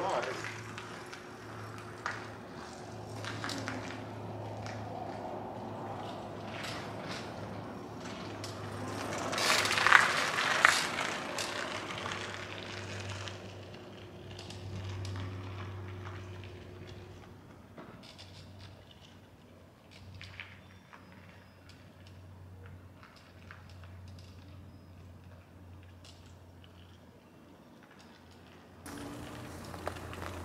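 Outdoor street ambience: a low steady hum with scattered light clicks and knocks, and a louder rushing pass lasting a couple of seconds about ten seconds in.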